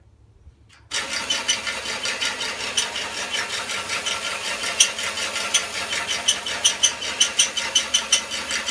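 FTC competition robot's electric drive motors and gearing starting up about a second in and running: a steady whirring buzz with irregular sharp clicks that grow more frequent near the end.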